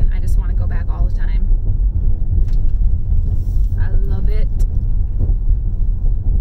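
Car driving, heard from inside the cabin: a steady low road and engine rumble.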